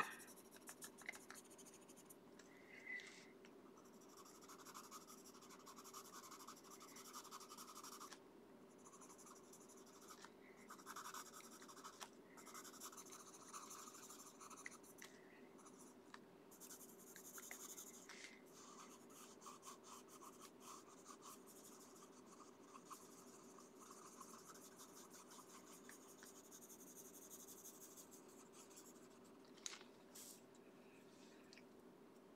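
Faint scratching of a Prismacolor Premier coloured pencil stroking over paper in short, irregular strokes with light to moderate pressure while blending, over a steady faint hum.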